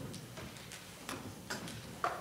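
A few light, irregular clicks and taps from musicians handling their instruments as they get ready to play, with a sharper knock at the very end.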